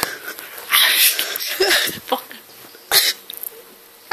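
People stifling laughter in breathy, wheezy bursts, with one short sharp burst about three seconds in.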